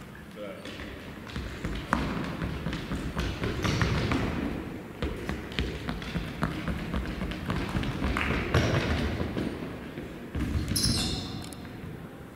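Sneakers pounding and squeaking on a sports hall floor as runners sprint across the hall and back, a fast patter of footfalls that swells and fades, with a brief high squeak near the end.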